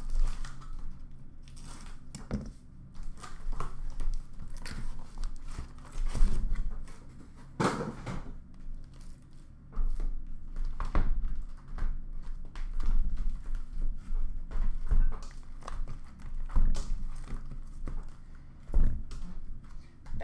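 Cardboard case being opened and the trading-card hobby boxes inside lifted out and stacked: irregular rustling, crinkling and scraping of cardboard with frequent light knocks as the boxes are set down, one louder knock about eight seconds in.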